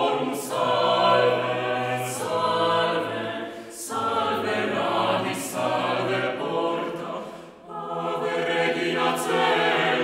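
Mixed vocal ensemble of sopranos, altos, tenors and basses singing unaccompanied in harmony, in phrases of held chords over a sustained bass line. The chords break off briefly twice, the longer pause near the three-quarter mark, and hissing consonants stand out now and then.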